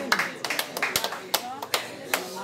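Scattered hand claps from a crowd of onlookers, a dozen or so sharp claps at irregular intervals, over voices talking.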